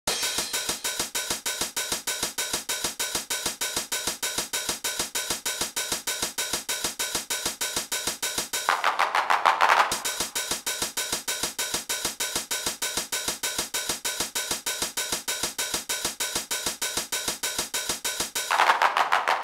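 Intro of an old-school gabber hardcore techno track: a fast, even electronic hi-hat and cymbal pattern with no kick drum. About halfway through, a burst of noise swells for about a second, then the hi-hat pattern carries on alone.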